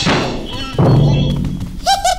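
Cartoon impact sound effects: a crashing clatter that dies away, then about a second in a heavy thud with a low, booming ring. A singing voice starts just at the end.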